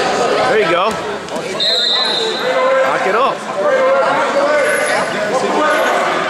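Coaches and spectators shouting and calling out indistinctly in a gym during a wrestling bout, with a couple of thuds about a second in and a short high-pitched tone shortly after.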